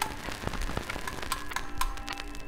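Contemporary electroacoustic music for oboe and electronics: a dense, irregular patter of clicks and crackles over a low rumble. A few held tones come in about halfway through.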